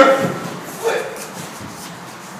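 A man shouts out in effort while shoving a large flat panel up a staircase, with the panel scuffing and shuffling against the stairs.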